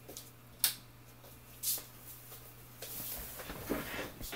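A sharp click a little after the start and a short scraping noise about a second later, then faint rustling, over a steady low electrical hum.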